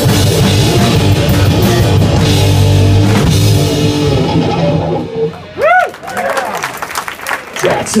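Live rock band of electric guitars, bass and drum kit finishing a song; the last chord rings out and fades away about four seconds in. Then come short whoops and shouts from the audience.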